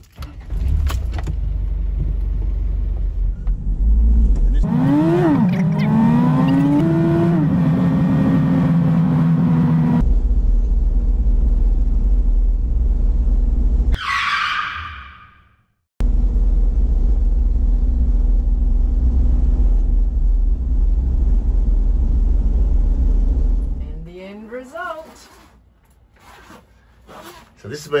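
Motorhome driving on the highway, heard from the cab: a steady low rumble of engine and road. In the first third the engine note rises, dips and rises again as the vehicle picks up speed. Near the end the rumble stops, leaving faint voices.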